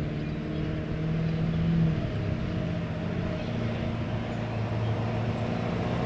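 Ford F-350's 7.3 Powerstroke turbo-diesel engine running as the truck drives toward the TV, heard from a distance. Its note changes about two seconds in.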